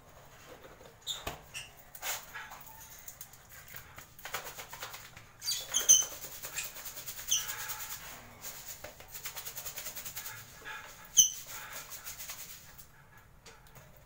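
Powdered vitamin mix rattling and knocking as it is shaken and handled in a plastic container, with a quick run of rattles about two-thirds of the way through. African lovebirds give short high chirps, the loudest about six seconds in and again near eleven seconds.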